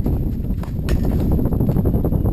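Wind rumbling and buffeting on the microphone, with a couple of sharp clicks about half a second and a second in.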